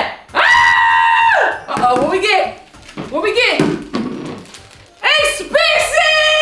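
Excited shrieks and drawn-out shouts from two people, with one long held cry about half a second in and a burst of high-pitched screams near the end.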